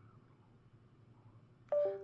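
Faint room tone, then near the end a short, loud two-note electronic chime that steps down in pitch. It sounds like a computer's USB device-disconnect sound, given off as the USB-connected phone shuts off and drops its connection.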